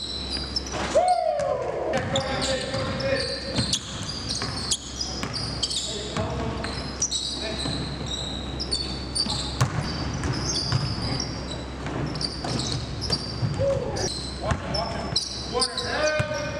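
Basketball game sounds in a gym: a ball bouncing on the hardwood floor, sneakers squeaking in many short high chirps, and players' voices calling out.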